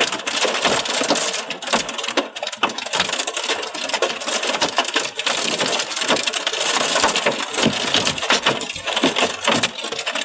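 Hailstones pelting the glass and the shell around the camera in a heavy hailstorm: a dense, continuous clatter of sharp, irregular hits.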